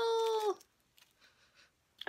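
A woman's high-pitched voice holding out the last vowel of a word in one steady tone, which stops about half a second in; near silence follows.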